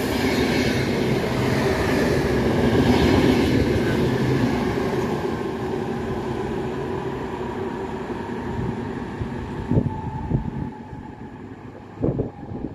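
Passenger train of double-deck coaches passing along the platform: a steady rumble of wheels on rail that swells for the first few seconds, then fades as the train draws away. A couple of short thumps come near the end.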